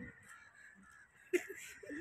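Faint animal calls: a quick run of short, pitched calls starting a little over halfway through, over a quiet outdoor background.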